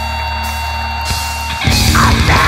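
A steady electrical hum from the stage amplifiers, then about one and a half seconds in a heavy metal band of distorted electric guitar, bass and drum kit comes in loud, all at once, as the song starts.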